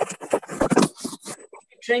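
Irregular scraping and rustling close to the microphone, stopping about a second and a half in.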